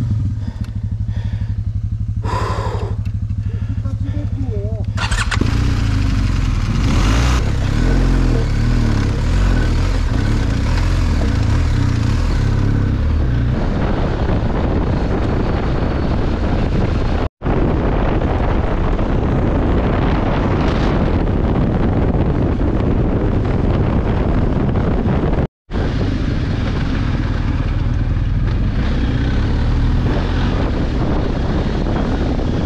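BMW R1250 GSA's boxer-twin engine idling for a few seconds, then pulling away and running under load over a rough dirt track. The sound drops out briefly twice.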